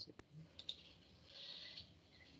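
A few faint computer mouse clicks in the first second, then near silence.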